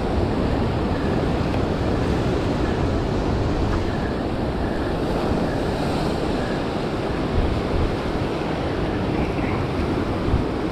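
Surf breaking and washing over a rocky reef shore, a steady rushing noise, with wind buffeting the microphone.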